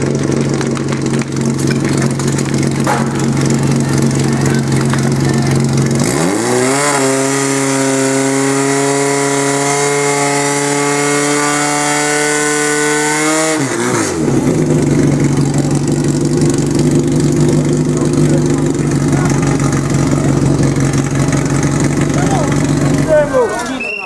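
Portable fire-sport pump engine running steadily, then revving up about six seconds in and held at high revs for about seven seconds, the throttle opened to drive water into the attack hoses, before dropping back to a lower speed. Voices are heard around it.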